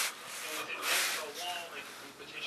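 Rubbing and scraping as a multimeter test probe is touched and scraped against a table saw's metal top, loudest about a second in.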